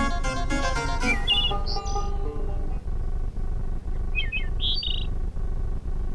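Cartoon soundtrack music: a plucked-string, balalaika-style tune stops about a second in, leaving a soft sustained accompaniment. Over it come short, high, twittering bird chirps in two pairs, one at about one to two seconds and one at about four to five seconds.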